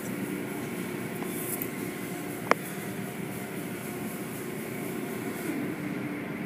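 Automatic tunnel car wash heard from inside the car: a steady rush of water spray and machinery as hanging soft-cloth curtain strips sweep across the hood. One sharp click about two and a half seconds in.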